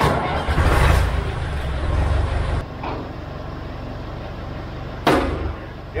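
Tractor engine running, louder for the first two and a half seconds while the hydraulic three-point hitch lifts a mounted lawn roller, then settling to a lower steady run. A short sharp knock about five seconds in.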